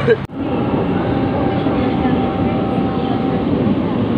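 Steady rumble of road traffic, with a thin steady whine that starts about half a second in and stops near the end. A brief sharp gap in the sound comes just after the start.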